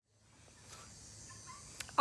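Faint outdoor chorus of insects buzzing steadily in summer heat, starting a moment in, with a brief click just before the end.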